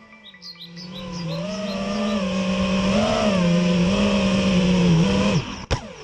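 5-inch FPV quadcopter's brushless motors and propellers whining, the pitch rising and falling with the throttle and growing louder as it comes in low. Near the end the motors cut out and the quad drops to the ground with a few sharp knocks.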